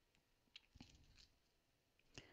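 Near silence, with a few faint soft clicks and rustles of hands shifting on a plastic-covered diamond-painting canvas between about half a second and a second in.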